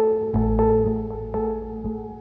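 Background music: slow ambient keyboard music with sustained chords, new notes struck about every half second, and a deep bass note coming in about a third of a second in.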